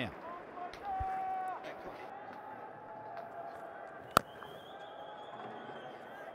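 Faint stadium crowd ambience at a cricket ground, a low steady murmur. A short held tone sounds about a second in, and a single sharp click comes a little after four seconds.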